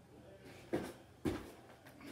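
Two thumps about half a second apart as a child's hands and feet land on a folding gymnastics mat during a cartwheel.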